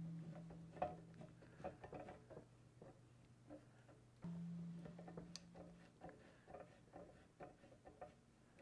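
Faint scattered clicks and ticks of a screw clamp being wound down on a large socket, pressing a transmission's front servo guide into its bore. A faint low hum runs underneath, breaking off about four seconds in, returning briefly, then fading.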